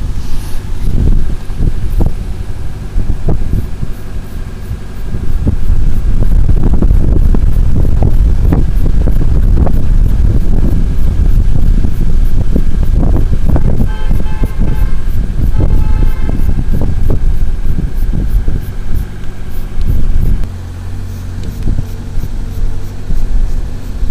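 Strong wind buffeting the microphone, with a car horn tooting a few short times about midway through.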